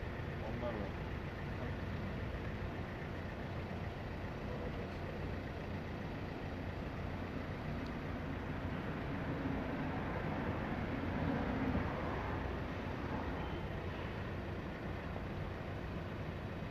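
Steady outdoor background noise: a low, even rumble like road traffic, with faint, indistinct voices partway through.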